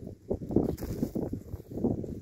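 Footsteps on dry grass and loose earth: several irregular dull thuds with some rustle as the walker crosses the field.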